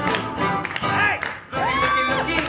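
Tap shoes striking a wooden floor in quick rhythm over a live swing band playing an instrumental passage. About one and a half seconds in, a held note from the band slides up onto pitch.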